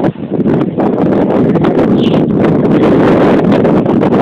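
Loud, steady wind buffeting the microphone.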